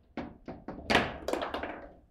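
Rapid knocks and clacks of a table football game in play, as the ball is struck by the figures and rods on a foosball table. There are about seven sharp knocks in two seconds, the loudest about a second in.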